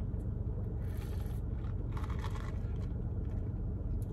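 Steady low rumble of an idling car heard inside its cabin, with two faint short noises about one and two seconds in.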